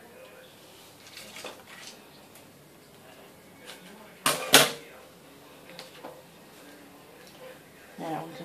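Scissors cutting ribbon: a few faint snips, then two loud sharp snips about a quarter second apart around four seconds in.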